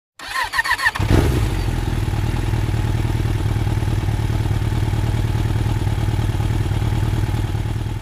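Suzuki sport motorcycle being started: the starter cranks for about a second, then the engine catches and settles into a steady idle.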